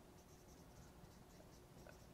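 Faint scratching of a dry-erase marker writing a word on a whiteboard.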